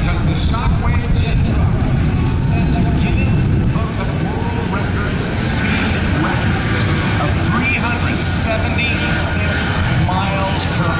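Shockwave jet truck's three Westinghouse J34 jet engines running on afterburner, a loud, steady rumble that eases somewhat about four seconds in as the flame goes out and the truck runs on down the runway.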